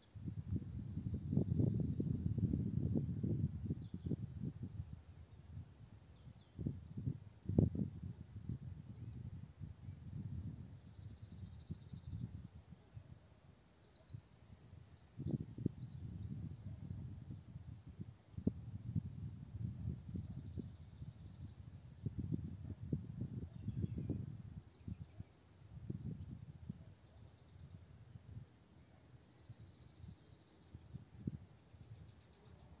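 Quiet outdoor ambience: irregular low rumbling noise on the microphone that swells and fades, and a faint high chirping trill that recurs about every nine seconds.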